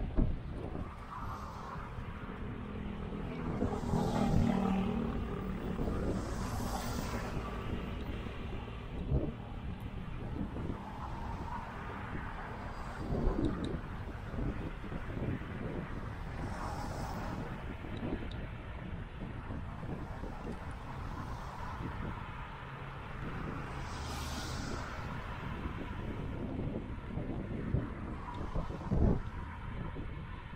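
Wind rumbling and buffeting on the microphone of a moving bicycle camera, with cars passing one at a time on the adjacent road, each a swelling tyre hiss that rises and fades. A few brief low thuds from wind gusts on the microphone.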